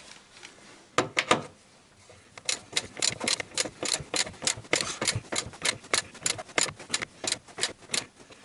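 Socket ratchet wrench clicking as its handle is swung back and forth to turn a stabilizer-bushing bracket bolt: a couple of clicks about a second in, then a steady run of about four to five clicks a second.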